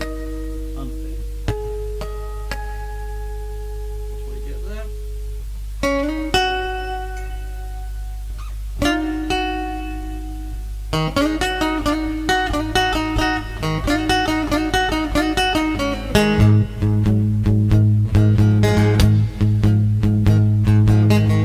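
Homemade three-string box guitar with a single-coil strap-style pickup, played electric with a touch of overdrive: a few long, chiming harmonics ring for the first five seconds or so, then single plucked notes, then from about 11 s steady picked riffing that grows louder near the end. A steady low hum runs underneath.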